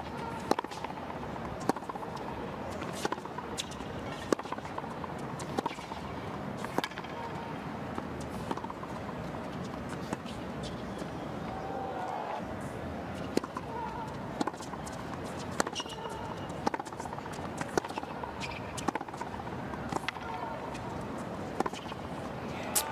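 Tennis rallies on a hard court: a ball struck back and forth with rackets, sharp hits about a second apart, with a pause in the middle between points, over a steady murmur from the crowd.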